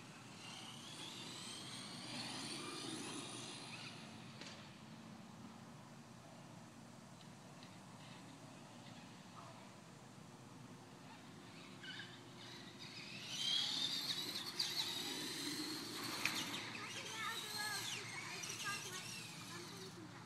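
Traxxas Stampede VXL radio-controlled trucks' brushless electric motors whining, the pitch gliding up and down as they speed around. The whine is fainter through the middle and louder again from about 13 seconds in.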